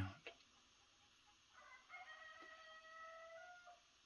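Near silence, then about a second and a half in a faint, drawn-out animal call with a steady pitch, lasting about two seconds.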